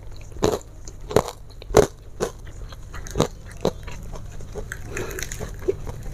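A person chewing crunchy food close to the microphone: crisp crunches about twice a second for the first four seconds, then softer, quieter chewing.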